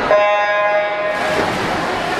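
Electronic starting horn for a swim race: one steady beep of about a second and a half, over the noise of a crowded pool hall.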